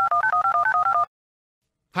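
Touch-tone telephone keypad dialing a number: a quick run of about ten two-note DTMF beeps lasting about a second.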